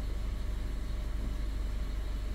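A steady low mechanical hum, even in level throughout.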